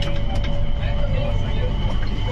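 Cabin noise of an elevated automated people-mover train in motion: a steady low rumble with a thin, even whine above it and a few light clicks.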